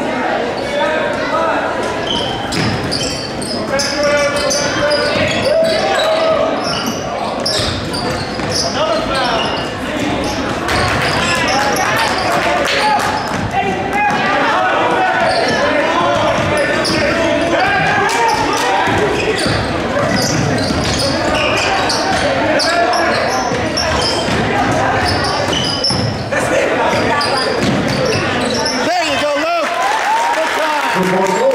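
A basketball dribbling on a hardwood gym court under a continuous hum of spectators talking in the stands.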